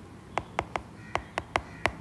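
A stylus tapping and clicking on a tablet's glass screen while handwriting: about seven short, sharp clicks at an uneven pace.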